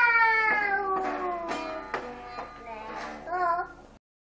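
A young child singing into a toy microphone: one long high note that slides steadily downward, then a short wavering note near the end, with a few sharp clicks behind it.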